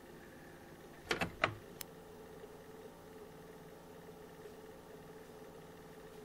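Laptop keyboard keys tapped two or three times, short sharp taps about a second in, over a faint steady hum.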